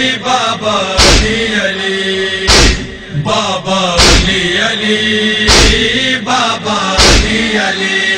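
A male voice chanting a nauha, a Shia mourning lament, with a heavy beat striking about every one and a half seconds.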